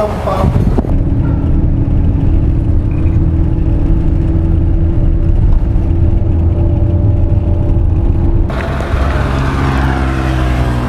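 Minibus engine and road noise heard from inside the cabin while driving: a steady, muffled low drone with a humming tone. Near the end it cuts off abruptly to brighter open-air sound.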